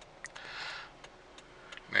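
Faint, regular ticking of a car's turn-signal indicator, about three ticks a second, heard inside the cabin, with a short soft hiss a little before the one-second mark.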